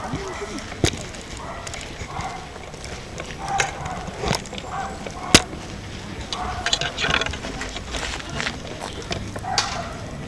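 Background chatter of people's voices, broken by a few sharp clicks, the loudest about five seconds in.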